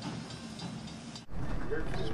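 Faint talk for about the first second, then a sudden cut to the steady low rumble of an excursion train moving along the track, heard from aboard, with people talking over it.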